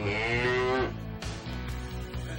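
A Hereford cow mooing: one long moo that falls slightly in pitch and stops just under a second in.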